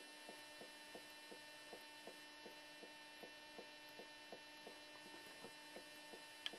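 Near silence: a faint steady electrical hum with soft, evenly spaced ticks about three times a second.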